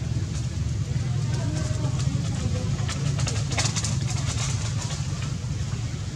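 Steady low rumble throughout, with a short spell of crackling rustle about three to four seconds in.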